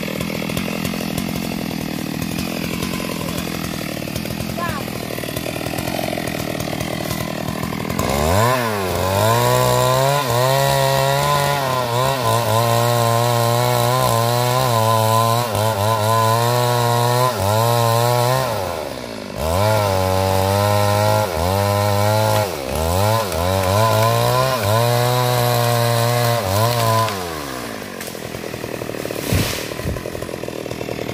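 Stihl MS 382 two-stroke chainsaw cutting through a tree trunk. For the first several seconds the engine is pulled down low in the cut. Then it climbs to high revs, its pitch wavering under load, eases off briefly about two-thirds of the way through and drops again near the end.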